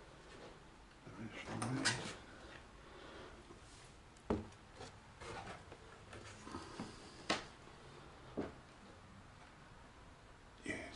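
Footsteps on bare wooden stair treads: a second of scuffing near the start, then three sharp, separate knocks spaced a second or more apart.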